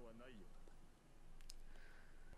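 Near silence after a faint voice trails off in the first half second, broken by a single short click about a second and a half in.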